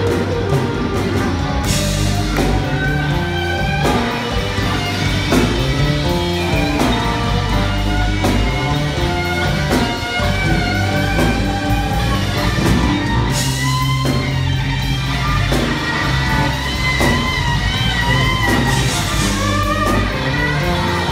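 Live electric blues band: an amplified electric guitar playing lead lines with bending notes over keyboard, bass and drums, heard from the audience in the hall.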